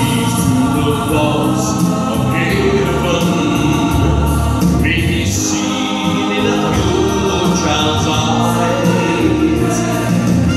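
A man singing a musical-theatre ballad solo into a handheld microphone, amplified, over a steady musical accompaniment.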